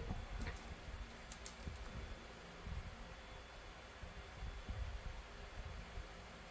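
Faint sounds of a pen marking a small paper sticker card, with a few light clicks about a second and a half in.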